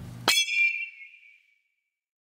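Background music cut off about a quarter second in by a single bright chime sound effect that rings and fades away over about a second.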